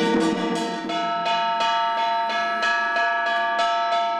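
Traditional Taoist ritual music: a held, pitched wind melody over a steady beat of metallic strikes, about three a second.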